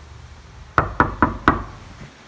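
Knuckles knocking on a wooden door: four quick raps about a quarter second apart, starting just under a second in.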